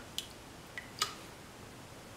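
Three light clicks of a utensil against a cooking pot as salt is put into the water, the loudest about a second in with a brief ring, over a steady background hiss.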